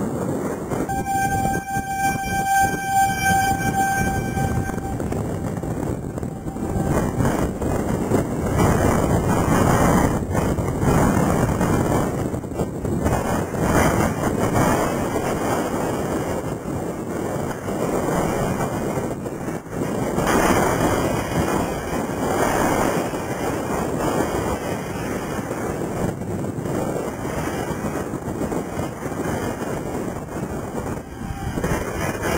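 Strong gusting wind buffeting the microphone, from straight-line winds ahead of a dust storm, rising and falling in loudness throughout. For the first few seconds a steady, single-pitched horn-like tone sounds over the wind and then fades out.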